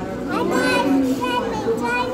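Children's voices, talking and calling out in high voices, without clear words.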